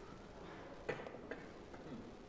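Quiet room tone broken by a few sharp clicks, the first and loudest just before a second in, then two fainter ones: computer mouse clicks opening a video file.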